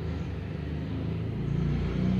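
A low, steady vehicle rumble that grows slightly louder toward the end.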